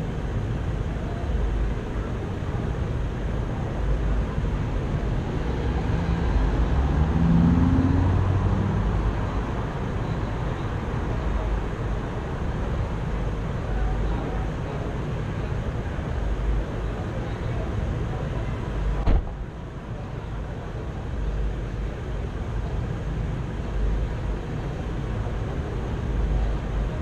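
Steady low rumble of a vehicle running, with a brief pitched engine swell about seven seconds in. A single sharp click comes about nineteen seconds in, after which the rumble is a little quieter.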